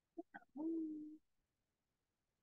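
A woman's brief wordless vocal sound: two quick short syllables, then a held, level hum lasting under a second.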